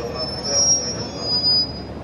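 JR Central 313 series electric train squealing in a high pitch as it brakes to a stop. The squeal swells to two loud peaks and cuts off shortly before the end, over a low rumble.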